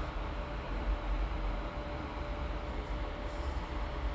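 Steady background noise: a low rumble with an even hiss and a faint steady hum, unchanging throughout.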